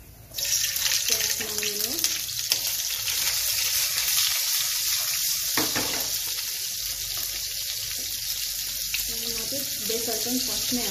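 Hot cooking oil in a pan sizzling as spice seeds are dropped in. The sizzle starts suddenly and carries on steadily. Sliced onion and garlic are frying in it by the middle, with a brief sharper crackle a little past halfway.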